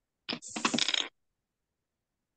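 A short clatter: a click, then about half a second of rattling jangle, then nothing.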